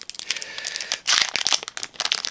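A foil Magic: The Gathering booster pack wrapper is being torn open and crinkled by hand, with a louder burst of crackling about a second in.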